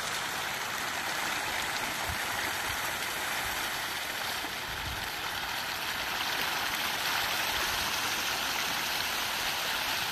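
A dense school of pangasius catfish thrashing at the pond surface in a feeding frenzy: a continuous, steady rush of splashing water.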